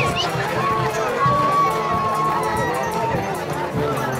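Crowd chatter: many voices talking at once close by, with one long high held note from about one to two and a half seconds in.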